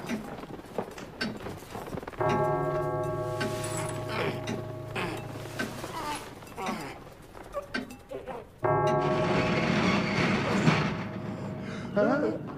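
Film score under the arm-wrestling scene: a sustained chord enters suddenly about two seconds in and fades, then a louder, fuller passage starts abruptly about nine seconds in. Scattered short knocks run through the quieter parts.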